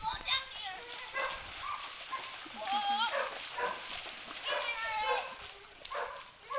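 Several children shrieking and shouting in high voices while playing in water, calls rising and falling one after another with no clear words.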